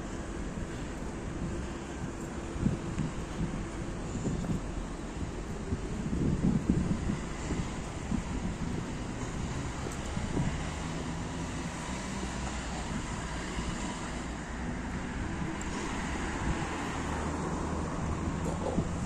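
Wind buffeting a phone microphone: a low rumble rising and falling in gusts, loudest about six to seven seconds in, over a faint steady low hum.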